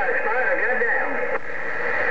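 A voice coming over a President HR2510 radio's speaker, thin and tinny over a bed of static. It cuts off about two-thirds of the way through, leaving a steady hiss.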